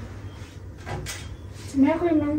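A soft knock or bump about a second in, then a person's voice starts a drawn-out, steady-pitched vocal sound near the end.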